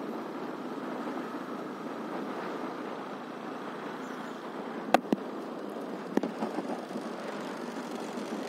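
Steady engine and road noise of the vehicle the recording is made from, driving along a street. A few sharp clicks cut through it: two close together about five seconds in and one more about a second later.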